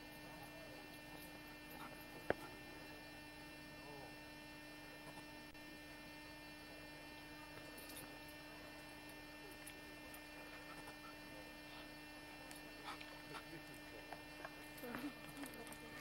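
Almost silent: a faint, steady electrical hum, with one sharp click a couple of seconds in.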